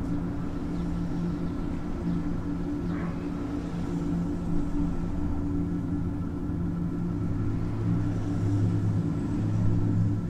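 A steady low mechanical hum, with a deeper tone joining about seven seconds in.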